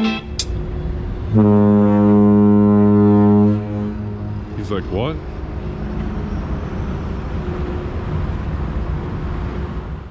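A ferry's horn sounds one long, deep, steady blast of about two seconds. Then comes steady outdoor noise with a brief wavering squeal about five seconds in.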